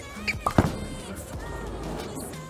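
Roto Grip RST X-2 bowling ball set down on the wooden lane at release with a sharp thud about half a second in, then rolling, under background music.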